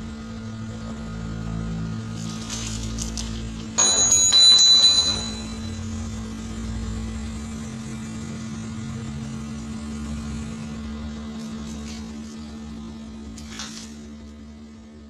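Steady electrical hum with a low rumble underneath. About four seconds in, a sudden loud high-pitched ringing sound lasts just over a second, and there are a few faint rustling handling noises.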